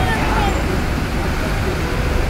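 Steady rumble of vehicle engines idling and creeping forward inside a ferry's enclosed car deck, with indistinct voices.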